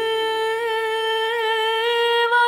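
A woman's singing voice holding one long note with a slight waver, over very sparse backing, in a Neapolitan neomelodic song.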